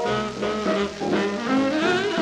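1943 small-group swing jazz played back from a 78 rpm record, the horns sounding held notes that step and slide in pitch.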